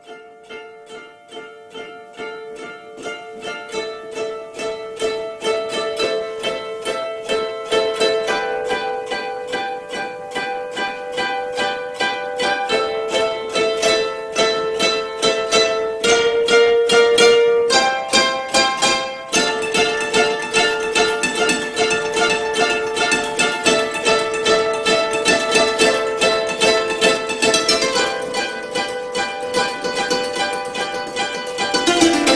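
Koto ensemble playing a piece of quickly repeated plucked notes. It starts quiet and builds louder over the first several seconds.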